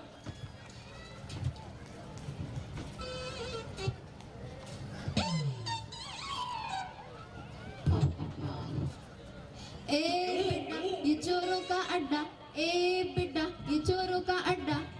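Music over a public-address system between stage acts, quieter and patchy at first with a falling glide about five seconds in and a short low thump near eight seconds; about ten seconds in a loud voice comes in over the music.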